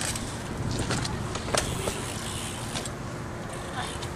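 BMX bike tyres rolling over concrete, with a sharp click about one and a half seconds in.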